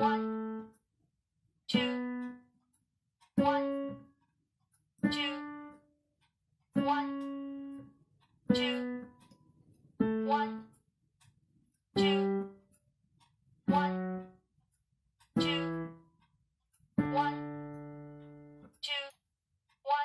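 Piano playing a one-octave D major scale with both hands together at a slow tempo. One note at a time is struck, about every 1.7 seconds, and each is left to ring and fade. The pitch rises and then falls back, and a longer held note comes near the end.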